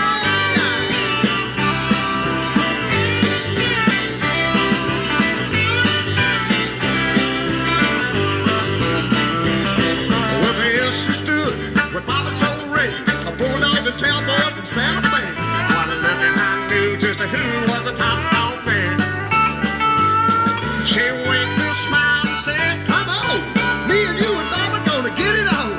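Live country-rock band playing an instrumental passage: drums and bass keep a steady beat under guitar, with a bending harmonica lead on top.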